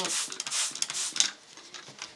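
Hand-pump water spray bottle misting water onto a paper napkin in a few quick hissing squirts over the first second or so, then stopping.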